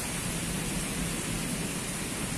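Heavy rain falling steadily, an even hiss.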